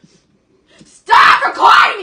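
A person screaming in a tantrum: after about a second of near quiet, two loud screamed outbursts.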